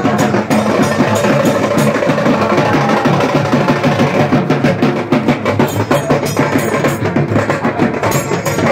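Fast, dense drumming with clattering percussion.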